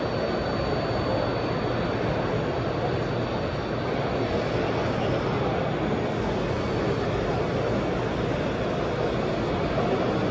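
Steady background din of a busy indoor exhibition hall, an even noisy rumble with no distinct events, and a faint high thin tone held in the first part.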